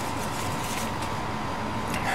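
Steady background hiss with a faint low hum and a thin steady tone: constant room noise with no distinct events.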